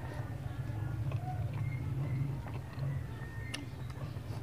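Soft eating sounds of a man eating rice and chicken gizzard by hand: quiet chewing with a few light clicks, over a steady low hum.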